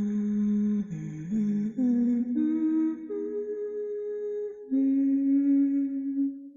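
Wordless humming in slow, held notes that step to a new pitch every second or so, with two voices sounding together in harmony.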